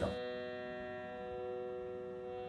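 A quiet, steady musical drone of several held notes sounding together, with no strokes or changes, underlying the start of a devotional song's accompaniment.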